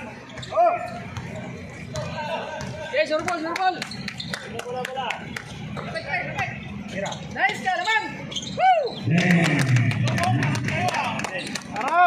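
Sounds of a basketball game in play: the ball bouncing on the court, short squeaks, and people calling out and chattering, loudest about nine to eleven seconds in.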